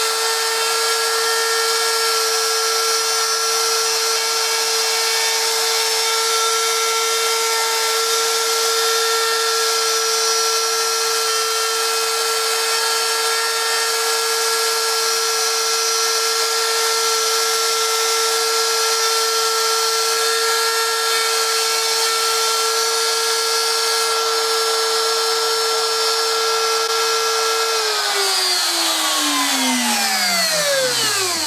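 Router motor on a homemade wooden pantograph running at a steady high whine with several overtones, routing a test engraving in wood. About two seconds before the end it is switched off and its pitch falls as it spins down.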